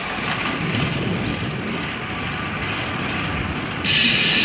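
Wind rushing over an action camera's microphone with the road noise of a bicycle rolling on pavement, steady, then much louder just before the end.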